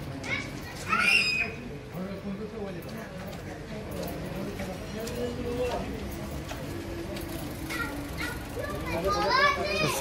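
Outdoor street voices: overlapping talk with children shouting and calling. There is a loud, high call about a second in and a burst of shouting near the end.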